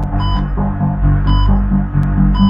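Dark electronic background music: a low pulsing synth drone, with a short high beep repeating about once a second.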